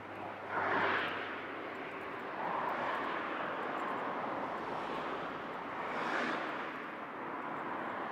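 Strong gusty wind, a steady rushing noise that swells sharply about a second in and again around six seconds.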